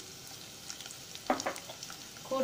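Chopped shallots sizzling gently in hot oil in a non-stick kadai, just after going into the pan. About a second and a half in there is one short, louder sound.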